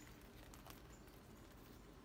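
Near silence, with a few faint rustles and ticks from leathery dried cayenne peppers and cotton cord being handled and lifted.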